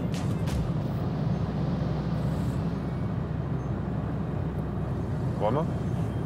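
Steady road and engine noise heard inside a car's cabin at highway speed, about 115 km/h: a low, even rumble with tyre hiss above it. A brief voice comes in near the end.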